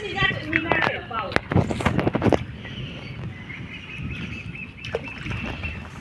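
Water sloshing and splashing around people wading through deep pond water while dragging a fishing net, with a few sharp splashes or knocks in the first couple of seconds.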